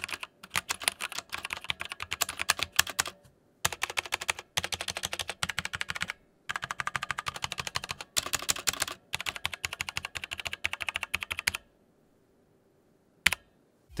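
Typing on a Motospeed CK101 tenkeyless mechanical keyboard with Otemu Red linear switches: fast runs of keystrokes in four bursts with short pauses between them. The bottom-out clack is a little deadened. The typing stops a couple of seconds before the end, and one last keystroke follows.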